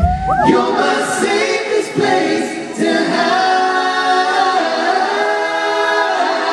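Male vocal group singing in close harmony, largely unaccompanied, holding long chords with several voices at once after a last guitar strum at the very start.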